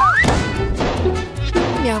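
A rising whistle, then a sudden bang about a quarter second in as a giant bubble-gum bubble bursts, over background music with a steady beat.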